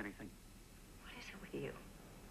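Faint, soft speech: a quiet voice trailing off at the start and a short soft phrase about a second in.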